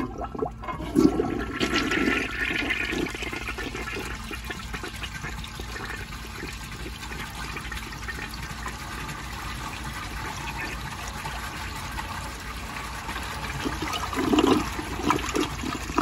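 1955 Eljer Duplex toilet flushing: a rush of water starts about a second in and swirls down the bowl steadily. Louder gurgles come near the end as the bowl empties.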